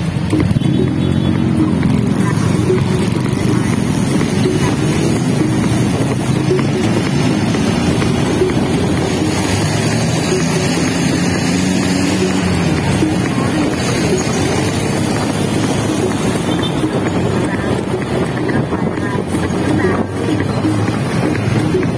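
Motorcycle engine pulling away from a standstill, its pitch rising, then running along in traffic; the pitch climbs again about ten seconds in as it speeds up.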